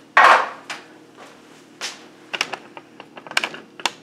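A sharp knock just after the start, then a quick run of light clicks and clatters: objects being handled and bumped in a kitchen.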